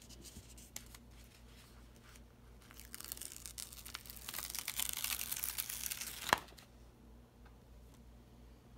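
Plastic protective film being peeled off the sticky adhesive of a diamond painting canvas: light handling at first, then about three seconds of loud crackling as the film pulls away, ending in one sharp snap.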